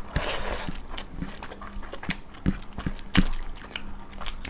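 Close-miked eating sounds of rice and chicken curry eaten by hand: chewing and lip smacks heard as scattered short, sharp clicks, over a faint steady hum.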